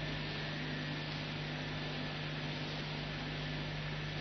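Steady low electrical hum under an even faint hiss: the background noise of the recording.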